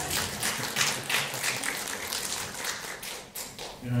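Scattered hand clapping from a small congregation, a quick irregular run of claps that thins out after about three and a half seconds.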